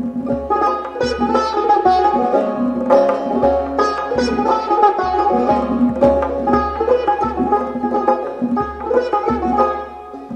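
Persian tar playing a quick plucked melody, accompanied by tombak goblet-drum strokes.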